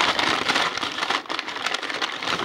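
A bag rustling and crinkling: dense crackles and small clicks, starting suddenly, as the next toy car is dug out of it.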